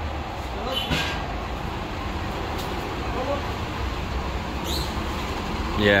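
Steady low rumble of street traffic passing close by, with a brief sharp sound about a second in.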